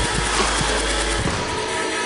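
Electronic dance music at 140 BPM mixed live on a DJ controller; the deep bass cuts out a little over a second in.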